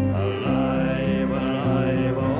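Irish folk band performing live: acoustic guitars and fiddle with male voices singing together in long, held lines.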